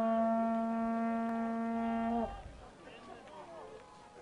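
A blown horn held on one long, steady note that dips slightly in pitch and cuts off a little over two seconds in.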